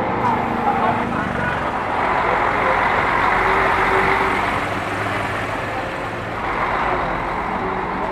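Steady drone of vehicle engines running, mixed with the chatter of an outdoor crowd.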